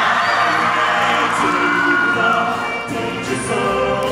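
High school show choir singing with a live band, two singers on handheld microphones carrying the vocal line over guitars, drums, keyboard and horns.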